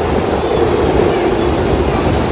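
Steady rumble and rush of a moving train heard from inside the passenger car, with low wheel-and-track noise.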